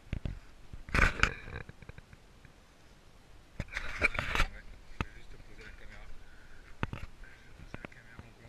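Handling noise from a camera being gripped and turned: two bursts of scraping and knocking, about a second in and again around four seconds in, then a few isolated clicks.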